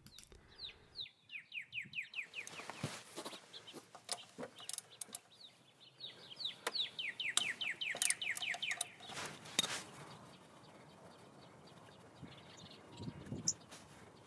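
A bird singing two runs of quick falling chirps, about ten a second, the first about half a second in and the second near the middle. Scattered faint clicks and knocks of a socket wrench on the final drive's oil check bolt fall in between.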